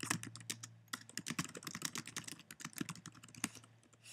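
Typing on a computer keyboard: a quick, uneven run of key clicks, several a second, entering a short sentence, over a faint steady hum.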